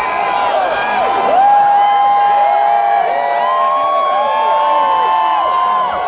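Large crowd cheering, with many overlapping drawn-out whoops and yells.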